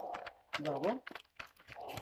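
Speech: short spoken Romanian words, with a few faint clicks in the pause between them.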